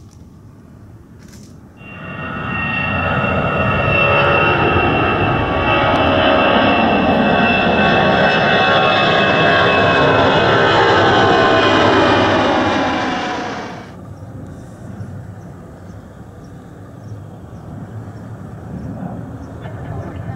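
FedEx three-engine wide-body jet passing low overhead: loud jet engine noise with whining tones that fall in pitch as it goes by. It cuts in suddenly about two seconds in and stops suddenly about twelve seconds later. A fainter jet rumble comes before and after.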